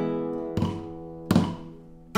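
Camps Primera Negra flamenco guitar playing a soleá: a chord rings and fades, then two sharp strokes about half a second and 1.3 seconds in, each left to die away, the sound trailing off low near the end.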